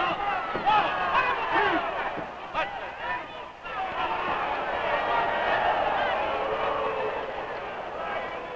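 Arena crowd of many voices shouting at once, dipping briefly a little past halfway through and then swelling again, heard on an old optical film soundtrack.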